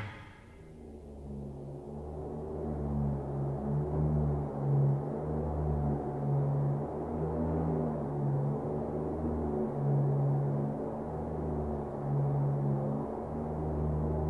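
Quiet low drone of a few deep, steady tones that swell and fade every second or two, with nothing high-pitched over it.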